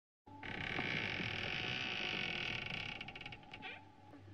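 A loud, steady hiss-like noise with a low hum underneath, starting a moment in and fading with a fluttering about three seconds in.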